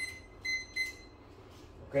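Timer alarm beeping: three short, high electronic beeps in quick succession over the first second, part of a repeating run of beeps.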